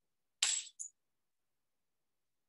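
Two quick bright clinks about half a second in, the first a little longer, each with a high ringing note.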